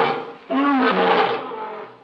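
A lion roaring twice: the first roar trails off in the first half second, and a second, longer rough roar begins about half a second in and fades away near the end.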